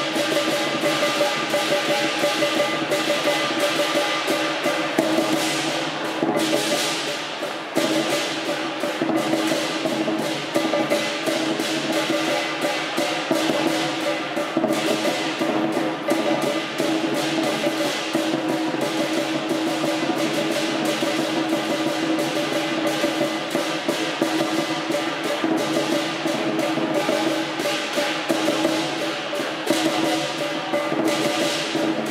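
Chinese lion-dance percussion of drum, gong and cymbals, playing without pause: a dense run of rapid strikes over a steady ringing metallic tone.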